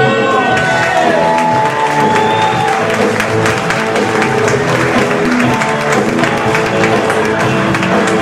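Walk-on music with a steady beat playing over audience applause as a comedian takes the stage.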